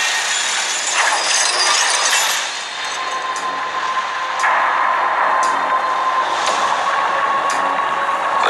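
Film trailer sound effects: a dense rushing noise, with a steady ringing tone from about three seconds in, and metal chains clinking about once a second.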